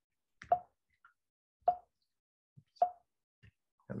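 Three short hollow taps, a little over a second apart, with silence between.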